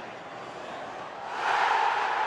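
Football stadium crowd, a steady hum that swells suddenly into a loud roar about a second and a half in as a player goes down in the penalty area: the home crowd appealing for a penalty.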